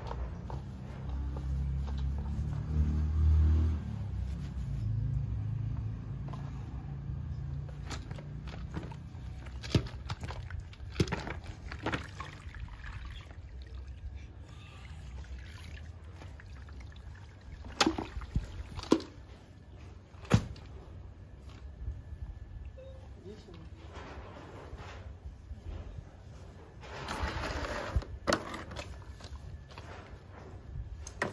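Spin mop and its plastic bucket being handled: a low rumble at first, then scattered sharp clicks and knocks from the mop, handle and bucket, with some water sounds.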